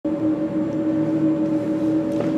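Steady hum of a lab ventilation fan: a constant drone holding two steady tones, one low and one a little higher, over a low rumble.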